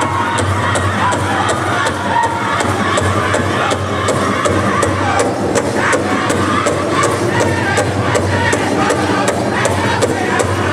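Powwow drum group singing a Grand Entry song over a large powwow drum struck in a steady beat, about three strokes a second, with crowd sound behind.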